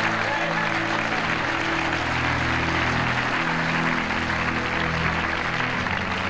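Congregation applauding steadily, over held low chords of background music.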